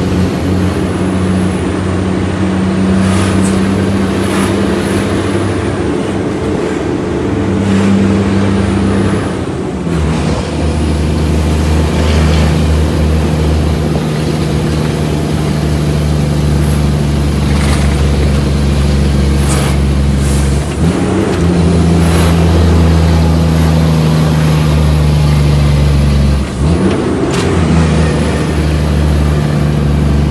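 Shacman F3000 heavy truck's diesel engine, heard from inside the cab, pulling steadily under way. The engine note breaks briefly three times, about a third of the way in, two-thirds in and near the end, as gears are changed, and a thin high whine dips and climbs back at each change.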